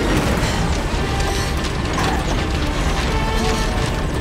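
Sound effects of the TARDIS interior breaking apart: continuous, loud mechanical grinding and rattling, with music underneath.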